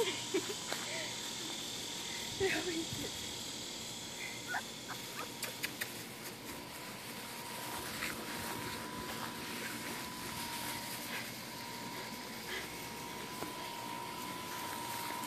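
Boxer puppies playing, giving a few short growls and yips in the first few seconds. After that only quiet scuffling is left.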